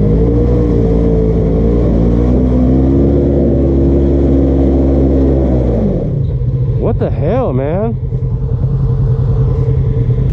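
Polaris RZR side-by-side's engine pulling under load as it climbs a steep, rutted dirt hill, its pitch shifting as the driver works the throttle. About six seconds in it drops back to a lower, steady idle-like note.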